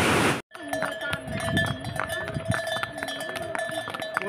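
A brief rush of white-water torrent that cuts off abruptly, followed by the bells on trail horses ringing and clinking continuously as they walk, with faint voices behind.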